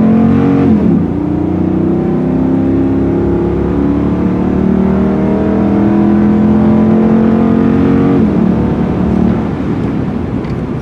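The 6.4-litre HEMI V8 of a 2014 Ram 2500 under full-throttle acceleration, heard from inside the cab. The revs climb steadily through the gears, with an upshift about a second in and another at about eight seconds. The engine note falls away near the end.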